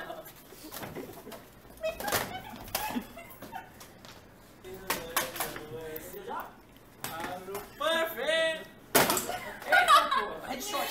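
Young people's voices and laughter, scattered and brief, with several sharp knocks and bumps in between. Near the end a louder burst of voices or laughter comes in.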